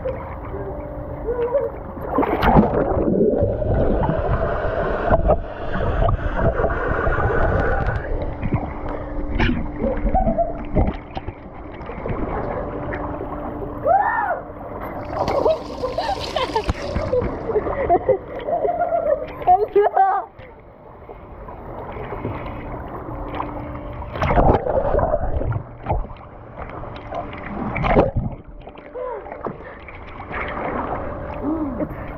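Pool water splashing and sloshing around a waterproof action camera held at the surface, with swimmers' voices calling out indistinctly.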